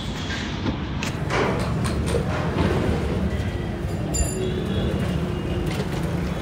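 Steady low rumble of a vehicle moving through a narrow street, with wind on the microphone.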